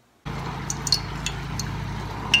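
Oil heating in a steel saucepan on a stove: a steady low hum with scattered small, sharp crackles. It starts suddenly about a quarter second in, after near silence.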